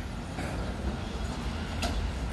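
Wind buffeting a phone's microphone outdoors: a low, fluttering rumble over faint street background, with two faint ticks.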